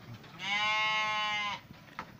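A goat bleating once, a single drawn-out call of just over a second.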